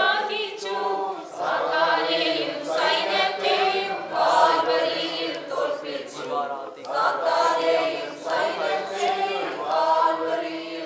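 A group of voices singing together without instruments, one continuous sung passage with wavering, held notes.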